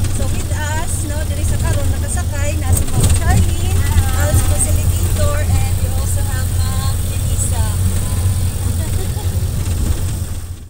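Steady low drone of a multicab's engine and road noise, heard from inside its open-sided rear passenger compartment while riding, with passengers' voices chatting over it.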